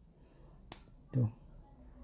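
A single sharp click as the plastic tie clip of a BOYA BY-M1 lavalier microphone is snapped onto the mic head.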